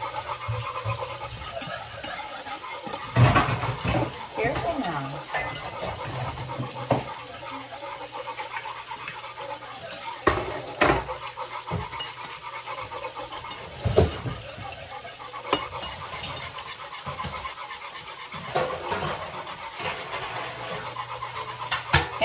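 A wire whisk stirring a thickening sauce in a metal saucepan, with scattered sharp knocks of the whisk against the pot. The sauce is being stirred until the xanthan gum thickens it.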